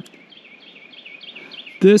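A songbird singing a quick run of repeated short notes, each sliding downward, growing a little louder toward the end.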